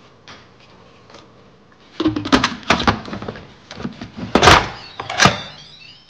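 Plastic lid of an electric pressure cooker being set onto the steel pot and twisted shut: a run of clunks, clicks and scraping, the loudest knock about four and a half seconds in, as the lid seats and locks for pressure cooking.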